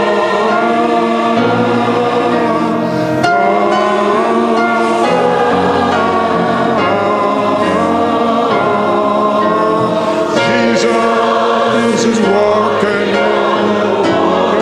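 A large crowd of several hundred men and women singing a slow chorus together, the sound of an untrained mass choir filling a large hall.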